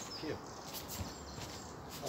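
Faint outdoor background with birds chirping, and a few light rustles and soft taps as a barefoot person shifts stance on a foam mat.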